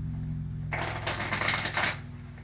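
A deck of playing cards riffle-shuffled on a cloth close-up mat: a rapid flutter of card edges that starts partway in and lasts about a second, over a steady low hum.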